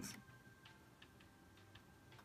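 Near silence: faint room tone with a few small, faint ticks.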